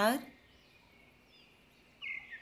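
Near silence: quiet room tone, with a few faint high chirps.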